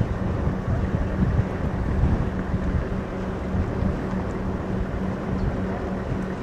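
Wind buffeting the camera's microphone: a rough, gusting low rumble, with a steady low hum running underneath.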